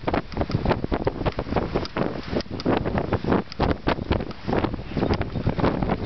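Wind buffeting the microphone on the open top deck of a moving bus, in rapid, uneven gusts.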